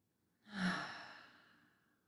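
A woman's deep exhale, a single breath out that starts about half a second in and fades away over about a second, taken as part of a guided deep-breathing exercise.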